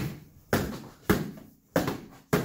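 Foam pool noodle smacking against forearms as they block it, four quick hits about half a second apart, each fading in the room's echo.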